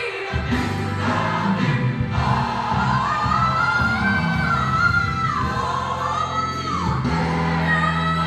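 Gospel song with singing over steady bass notes; through the middle a voice holds long notes that rise and then fall.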